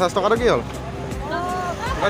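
Busy street traffic, with vehicle engines running in the background, under a person's loud voice in the first half second and a shorter voiced sound in the middle.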